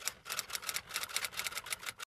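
Typewriter keys clacking in a quick, irregular run of about eight to ten strokes a second. It cuts off suddenly near the end. This is a typing sound effect laid under a section title card.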